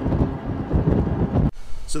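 Vehicle driving on the road with wind buffeting the microphone, a dense low rumble that cuts off abruptly about one and a half seconds in.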